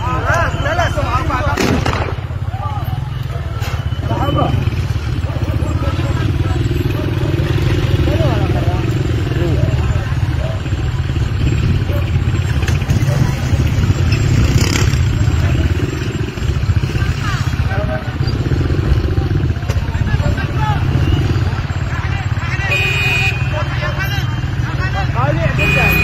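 Street traffic at a busy junction: motorcycle and car engines running in a continuous low rumble, with scattered voices of onlookers over it. A short high-pitched tone sounds near the end.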